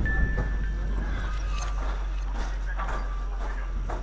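Footsteps crunching on a concrete floor littered with broken rubble and dry leaves, landing irregularly about every half second over a steady low rumble.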